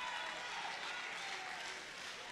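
Congregation applauding, a soft even patter of many hands that gradually dies away.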